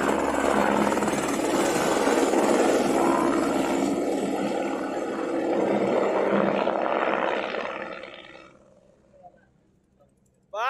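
A helicopter taking off and flying away: loud steady rotor and engine noise that fades out near the end as it leaves.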